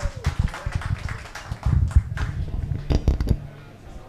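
Handling noise from a handheld microphone being lifted off its stand and carried: a run of irregular dull thumps and rustles.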